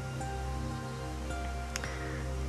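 Soft, slow background music of long held notes over a low steady drone.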